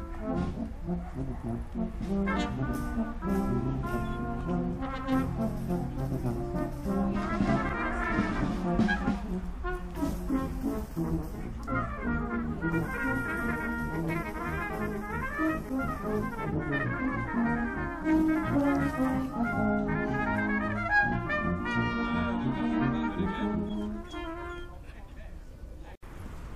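A brass band playing a tune with trumpets and trombones, the music fading away near the end.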